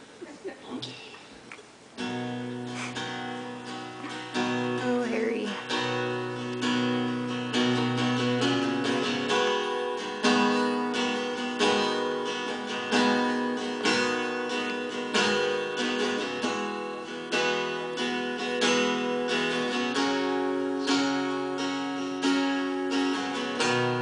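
Acoustic guitar, strummed chords in a steady rhythm, starting about two seconds in as the opening of a song.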